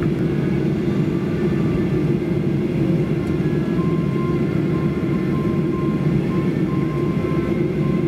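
Steady low rumble of a Boeing 737-800's cabin, its CFM56 jet engines idling while the aircraft taxis to the gate. From about four seconds in, a faint repeated high beep sounds over the rumble.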